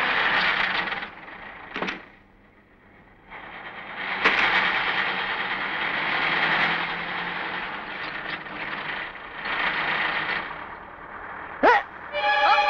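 A van driving up, heard as a steady rushing noise of engine and tyres that drops away for a couple of seconds early on. A sharp knock comes about four seconds in, and a short swooping sound comes near the end.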